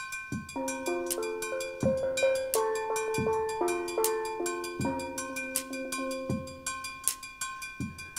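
Steel pan (steel drum) tuned from a cut-down 55-gallon oil drum, struck with sticks in a quick melodic run of ringing, pitched notes. A soft low thump comes about every second and a half beneath the melody.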